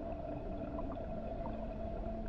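A steady hum with a held, higher tone above it and a light hiss under both, with no change through the pause.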